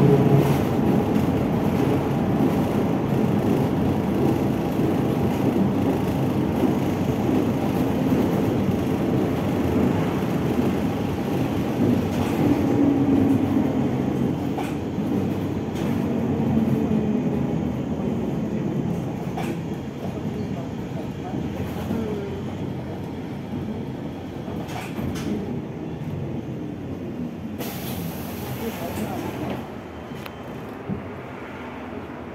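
Cabin noise of a ZiU-682G trolleybus under way: the electric traction motor whining up and down in pitch over a steady road rumble, with knocks and rattles from the body. The noise eases toward the end as it slows, and a short burst of air hiss comes about two seconds before the end.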